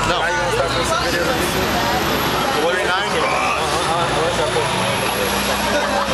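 Indistinct talk from several people over a steady low room hum, with a thin high-pitched whine that comes in within the first second and holds.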